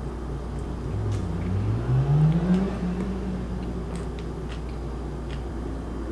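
A person chewing a mouthful of a soft tortilla wrap, with faint mouth clicks. About a second in comes a low hummed 'mmm' that rises in pitch and holds briefly.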